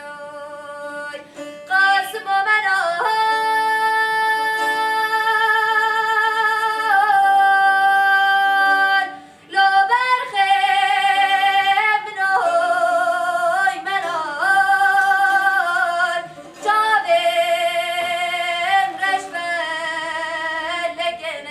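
A woman singing solo in a full, strong voice, holding long notes with a wavering vibrato and ornamented turns between them. She pauses briefly for breath about halfway through and again near the end.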